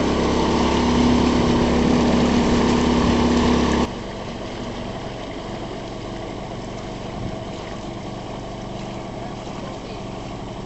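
A motorboat engine running steadily at close range; about four seconds in the sound cuts abruptly to a quieter, more distant steady hum.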